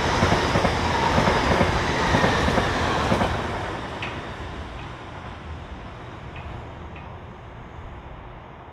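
A Lumo Class 803 electric multiple unit passing close by, a loud steady rush and rumble of wheels on rail that drops away about three seconds in and fades as the train recedes.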